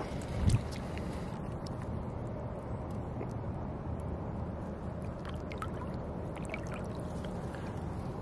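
Pond water lapping and dribbling around a largemouth bass held by the lip in the shallows as it is revived before release, with many small drips and splashes over a steady low wash. A soft thump about half a second in.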